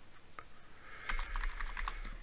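Typing on a computer keyboard: a single keystroke about half a second in, then a quick run of keystrokes in the second half.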